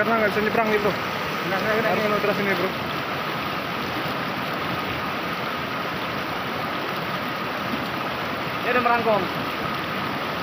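River water rushing steadily over rocky rapids. A man's voice is heard briefly over it in the first few seconds and again near the end.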